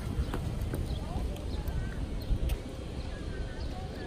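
Outdoor ambience beside a park road: a steady low rumble, faint voices of people passing, short chirps, and scattered sharp clicks and ticks.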